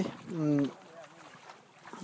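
A short vocal sound from a person's voice about half a second in, falling in pitch, followed by a brief quiet stretch before the talking resumes.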